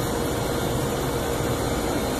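Steady mechanical drone of rooftop air-conditioning equipment running, with a faint held tone over a low hum.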